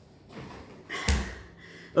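A thump about a second in as a person settles into a chair at a desk, with some rustling of movement. Faint steady ambient room noise from an air-conditioning unit runs underneath.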